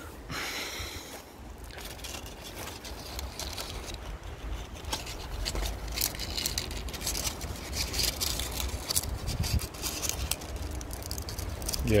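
Dry, brown rollinia leaves crackling and rustling as they are handled, with many quick, sharp crackles from about two seconds in, over a steady low rumble.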